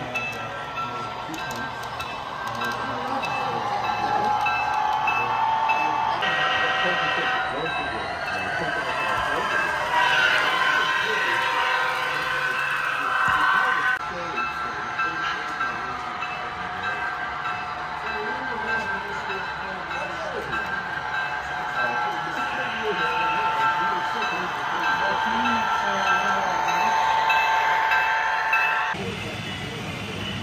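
Model trains running on a club layout: a steady mix of tones over a running rumble that changes abruptly three times, with voices in the background.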